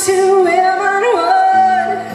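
Female lead vocal singing a long held note live, with a quick flip up in pitch and back about a second in. A low, steady accompanying note comes in under it near the end.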